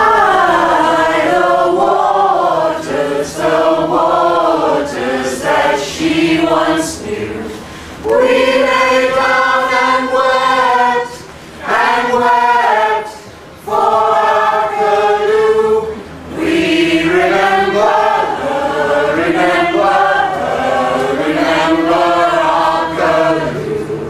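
Mixed choir of men and women singing together, in sung phrases with short breaks between them.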